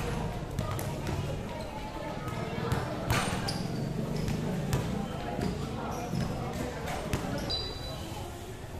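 A basketball bouncing on a concrete court, a series of sharp knocks with the strongest about three seconds in, over the chatter of players and onlookers.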